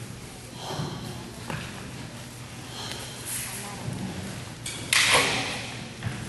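Murmur of voices echoing in a large gym hall, then a loud, sharp kiai shout about five seconds in, with a falling pitch.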